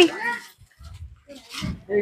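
Speech: a voice trails off, a short lull with only faint background noise follows, then talking starts again near the end.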